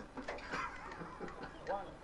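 People talking in a studio, with a laugh near the end.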